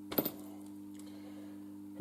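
Small metal fuel-injector parts clicking against each other as they are handled on the bench: a quick cluster of clicks just after the start and one faint click about a second in, over a steady low hum.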